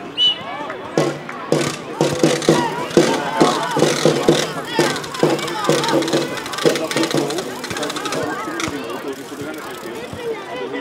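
Overlapping voices of spectators and players calling out around a grass football pitch, with frequent short knocks mixed in.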